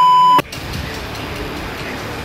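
A steady, high censor bleep lasting under half a second, masking a swear word, that cuts off suddenly. It is followed by a low, steady background noise.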